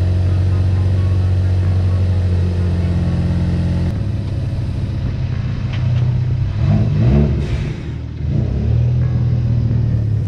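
Ford Focus ST's turbocharged 2.0-litre four-cylinder idling steadily just after starting; about four seconds in the idle note changes, and around seven seconds the revs rise briefly as the car pulls away in reverse.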